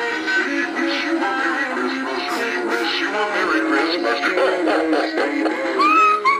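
Christmas music with a singing voice playing from animated singing and dancing Santa figures.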